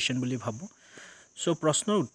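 A man speaking Assamese in two short phrases with a brief pause between them, over a steady high-pitched background whine.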